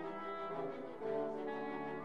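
Background music of sustained held chords, moving to a new chord about a second in.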